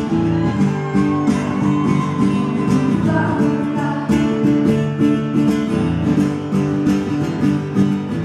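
Live acoustic pop song: an acoustic guitar strummed in a steady rhythm, with a woman's sung voice in places.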